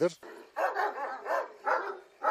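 Large Kangal-type shepherd dogs barking in a quick run of short barks, about two or three a second, starting about half a second in.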